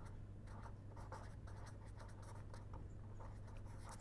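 Pen writing on paper: faint, irregular scratching strokes as words are written, over a low steady hum.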